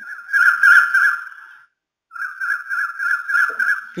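Mobile phone ringtone played into a microphone: a plain electronic trilling ring, sounding twice with a half-second break, the second ring starting about two seconds in.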